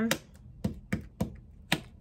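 Five short, sharp taps spread unevenly across a couple of seconds, the last one the loudest.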